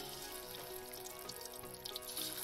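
Background music with a steady tune, over the sizzle of turmeric-and-chilli-coated boiled eggs frying in hot oil in a kadai.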